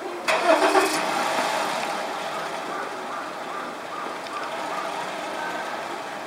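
A motor vehicle engine, loudest about half a second in and then running on as a steady hum.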